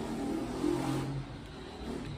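A motor vehicle running in the background, a low hum with a hiss that fades over the second half.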